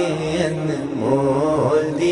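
Naat singing: a male voice holding a long melodic line that bends up and down, over a low, steady backing drone of chanted vocals.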